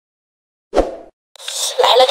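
Silence, then a single short pop with a low thump about three quarters of a second in. After a brief gap, background hiss with a faint steady high whine comes in, and a woman's voice starts near the end.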